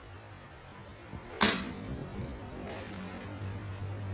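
Golf iron striking a ball off a practice mat: one sharp crack about a second and a half in, then a fainter click about a second later over a low hum.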